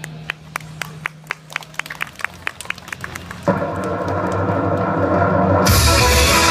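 Scattered hand claps from a small audience, about four a second. About halfway through, recorded music starts over the stage loudspeakers, and a fuller, louder band beat comes in near the end.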